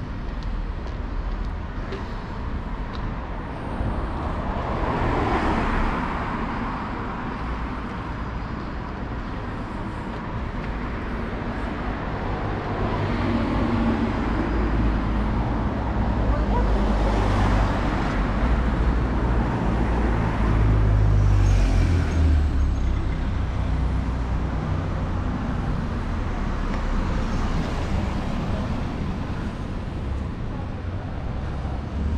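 City street traffic: cars passing over a steady low rumble, swelling as vehicles go by about 5 s in and again from about 16 to 22 s, loudest near 21 s.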